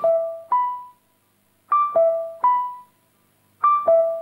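Electric piano playing a short three-note phrase (high, low, then middle note) over and over, each note ringing and fading, with a second of silence between phrases.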